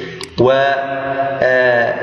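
A man's voice holding a long, level drawn-out "wa…" (Arabic "and") for about a second and a half, a spoken hesitation filler in the middle of a lecture.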